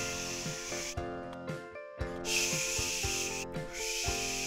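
Sizzling like food frying in a pan, in two hissing bursts of about a second and a half each, with a short gap between them, over soft background music.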